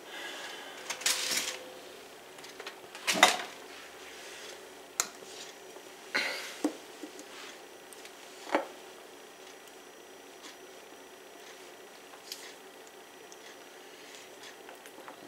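Stainless steel mixing bowl clanking and knocking as it is lifted off a stand mixer and handled with a spatula: about five sharp knocks spread over the first nine seconds, the loudest about three seconds in, with a brief scraping rush about a second in.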